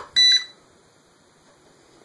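Xtreem Quadforce drone's 2.4 GHz handheld controller being switched on: a click, then one short high-pitched electronic beep as it powers up.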